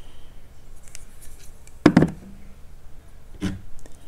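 Small plastic candle holders being handled and set down on a table: a few light clicks, a sharp knock just before two seconds in, and a softer knock near the end.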